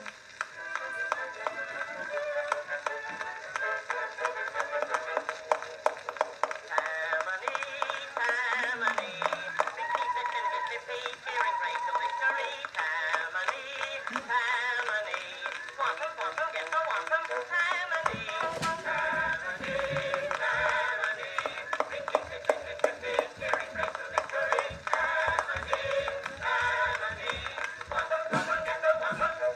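A mixed chorus sings a medley of old popular songs, played from a cylinder record on an acoustic Edison cylinder phonograph. The sound is thin and narrow, with surface crackle running through it.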